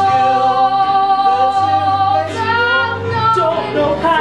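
A woman singing a song, holding one long note for about the first second, then moving through a changing melody over a steady low accompaniment.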